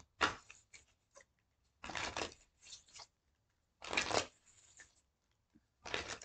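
A deck of tarot cards being shuffled by hand: short bursts of cards sliding and slapping against each other about every two seconds, with small ticks between them.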